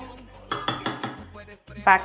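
A metal spoon clinks and scrapes against a metal pot of fried rice a few times, over background music with a steady bass line.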